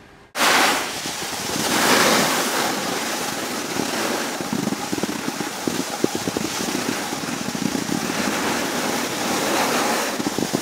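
Wind buffeting the microphone and skis scraping and crackling over packed snow while the camera moves down a ski slope, a steady loud noise that starts abruptly a moment in.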